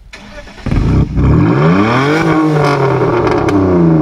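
BMW E46's exhaust through quad tailpipes as the engine is revved up and back down once, loudly, with a few sharp cracks from the exhaust.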